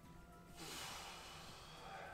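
A man breathing out audibly through the mouth after holding his breath: a long breathy exhale that starts about half a second in, as part of a calming breathing exercise.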